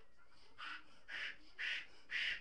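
A large latex balloon being blown up by mouth: short rasping puffs of breath into its neck, about two a second, starting about half a second in and growing louder.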